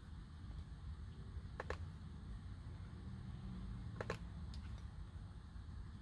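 Faint room tone with a low steady hum, broken by a few short computer-mouse clicks, about two seconds in and about four seconds in, as dialog boxes in the tuning software are clicked through.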